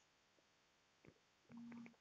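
Quiet wiping of a duster across a whiteboard, mostly near silence, with a faint click about a second in. Near the end comes a low, steady tone lasting about half a second.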